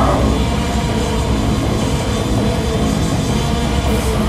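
Hardcore punk band playing live: a loud, dense full-band passage of guitars, bass and drums, recorded from the room. A shouted vocal line cuts off just at the start.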